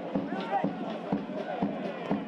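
A football crowd's drum beating steadily, about two beats a second, under supporters singing and chanting.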